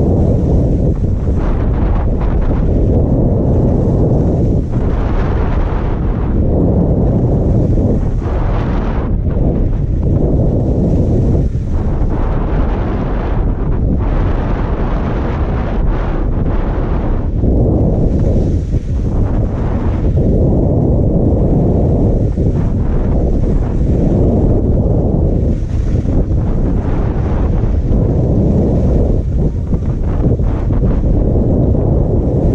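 Heavy wind buffeting on a GoPro's microphone while skiing downhill at about 27 km/h: a loud, steady rumble. Over it, ski edges scraping on packed snow swell and fade every couple of seconds with the turns.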